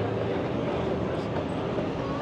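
Busy street ambience dominated by a steady mechanical hum with a constant low tone, the even drone of machinery such as an extractor fan or an idling engine.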